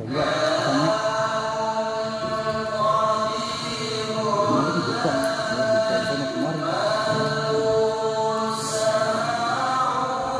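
A group of boys chanting sholawat, blessings on the Prophet Muhammad, together in a slow, drawn-out melody.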